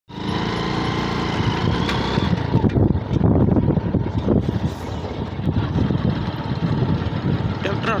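Motorcycle engine running at road speed, with wind rumbling on the microphone. A man's voice starts near the end.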